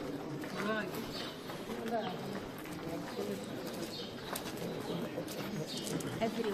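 Several people talking at once in low, overlapping chatter.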